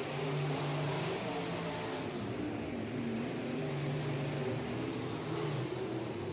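Race car engines running on a dirt oval, heard from the grandstand, their pitch rising and falling as the cars lap.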